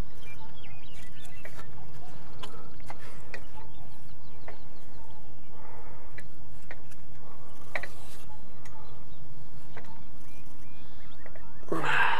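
Steady wind rumble on the microphone, with scattered small clicks and taps from hands working the blades and hub of a small wind turbine.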